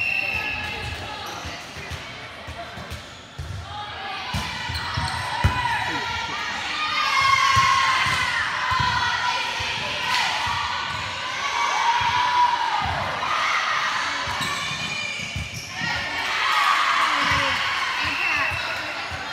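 Indoor volleyball rally: the ball is struck and thuds on the hard gym floor, sneakers squeak in short arcs on the court, and players shout.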